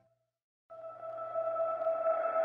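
Background music: a short silence, then a sustained ambient drone of steady held tones starts and swells.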